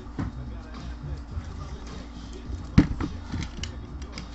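Shrink-wrapped cardboard trading-card boxes being handled and shifted on a table, with a few light clicks and a sharp knock about three seconds in as a box is set down.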